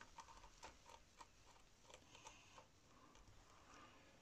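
Near silence: room tone with a few faint, scattered small ticks.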